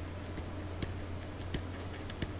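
Faint, irregularly spaced clicks of a stylus tapping on a tablet screen during handwriting, three in all, over a steady low hum.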